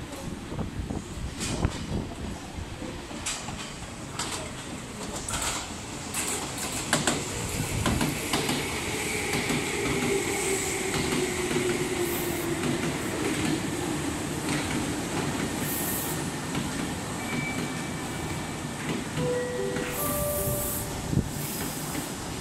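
Meitetsu 1200-series and 1800-series electric train pulling into the platform: wheels clacking over rail joints and a motor whine falling in pitch as it slows. Brief squeals follow near the end as it brakes.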